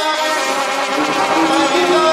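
Banda sinaloense playing live: brass and clarinets hold sustained notes in an instrumental passage, with the lower notes stepping in pitch partway through.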